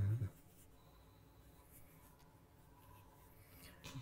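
Near silence: quiet room tone with a few faint rustles in a pause between speech. A voice trails off just after the start, and speech begins again at the very end.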